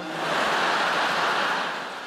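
A large theatre audience laughing and applauding, swelling quickly to a peak and then slowly fading.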